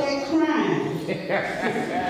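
A woman's voice over a microphone, the words not made out.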